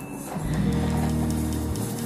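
Background music: a low chord held for about a second, starting about half a second in and cutting off near the end.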